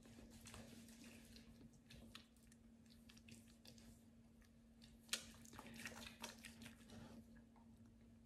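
Faint wet squishing and soft clicks of hands rubbing cleansing foam over the face, with one sharper click about five seconds in. A steady low hum runs underneath.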